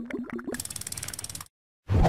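Animated end-screen sound effects: a wobbling tone with quick clicks, then about a second of rapid, even ratchet-like clicking, then a brief pause and a short low hit near the end.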